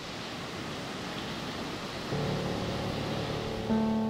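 Steady rush of ocean surf breaking on a shore. About halfway through, soft piano music comes in with low held notes, and more notes join near the end.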